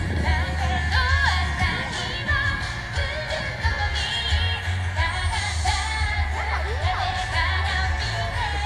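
A woman singing a pop song to her own acoustic guitar through a stage PA, with a steady low rumble of wind buffeting the microphone underneath.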